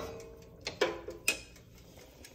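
A pot lid, just set down on the stove grate, ringing briefly and fading, followed by a few light clicks and knocks as a wooden spoon is picked up.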